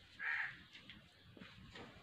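A crow cawing once, a single short call near the start.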